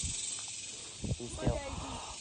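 A steady high hiss, with a short burst of a person's voice about a second in.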